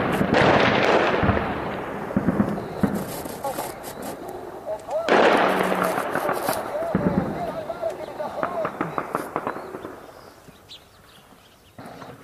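Two heavy shell explosions, one at the start and another about five seconds in, each followed by a long rolling rumble that slowly dies away.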